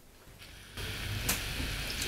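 Near silence, then about three-quarters of a second in a steady fizzing hiss begins as cola is poured from a large plastic bottle into a plastic cup, with one short click about a second later.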